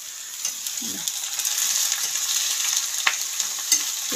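Black mushrooms sizzling as they fry in a wok on a gas stove, being stirred, the sizzle growing louder about a second in. A couple of sharp clicks near the end come from the stirring utensil against the pan.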